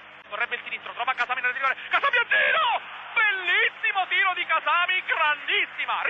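Rapid Italian football commentary by the commentator, talking almost without pause over steady stadium crowd noise.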